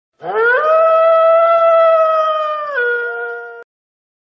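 A canine howl: one long call that rises at the start, holds a steady pitch, then drops to a lower note and cuts off suddenly.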